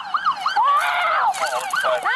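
A police siren in a fast yelp, its pitch sweeping up and down three to four times a second, with one longer sweep about a second in.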